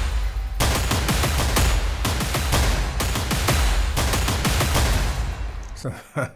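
Sampled epic drum layer played solo: super-aggressive, dense rapid hits with heavy booming lows, dying away just before the end.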